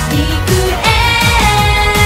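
Live J-pop song: several female voices singing together over a backing band with a steady drum beat.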